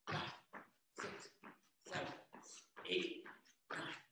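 A man counting jumping-jack repetitions aloud, about one number a second.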